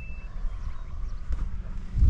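Wind buffeting the microphone, a steady low rumble. A high, steady ringing tone fades out just after the start.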